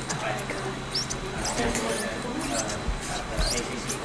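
Quiet speech, with several short high squeaks and two brief low thumps about three seconds in.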